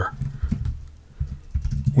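Typing on a computer keyboard: a short run of dull keystrokes.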